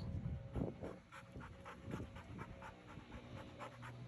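Labrador retriever puppy panting, a faint, quick, even rhythm of breaths.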